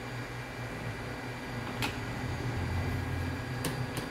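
Low steady hum of an Atlas Omega II traction elevator at the landing, with a sharp click about two seconds in and two more clicks near the end as the swing landing door's handle and latch are worked.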